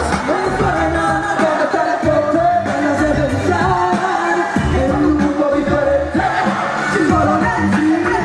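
A woman singing live into a microphone over an amplified hip-hop backing beat with a pulsing bass.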